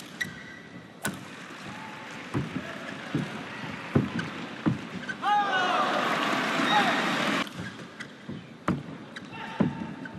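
Badminton rally: racket strikes on the shuttlecock as sharp, widely spaced cracks, and brief high squeaks of shoes skidding on the court mat about five seconds in. The arena crowd noise swells for about two seconds as the point is won.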